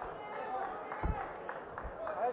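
Indistinct voices and murmur around the cage, with a single dull thump about a second in.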